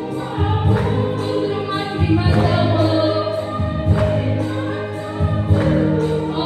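A women's choir singing a gospel hymn together.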